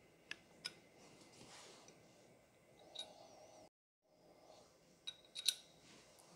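Faint handling of the small steel and brass parts of a CNC tool changer's umbrella shuttle motor arm, with a few light metallic clicks: two near the start, one in the middle and a quick cluster near the end.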